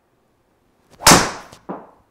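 A driver striking a golf ball in a full swing: one loud sharp crack about a second in, ringing briefly, followed by a smaller knock about half a second later.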